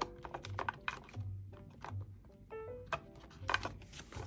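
A run of light plastic clicks and taps as plastic cards are flipped through in a clear acrylic box and one is pulled out, over soft background music with a steady low beat.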